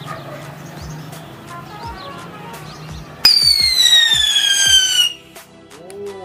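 Holi whistle colour-smoke ball going off: a loud, shrill whistle that starts about three seconds in and slowly falls in pitch for about two seconds, over background music.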